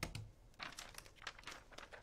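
Clear plastic carrier sheet of heat-transfer vinyl crinkling in a run of short crackles as it is handled and laid onto a T-shirt, after two soft thumps of a hand patting the shirt at the start.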